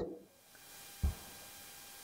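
A block of smoked pork back fat set down on a wooden serving board: one brief, soft thump about a second in, otherwise quiet room tone.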